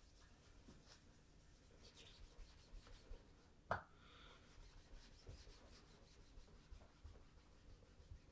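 Faint rubbing of a cloth over a leather shoe, in short scattered strokes. A single sharp click a little before halfway through is the loudest sound.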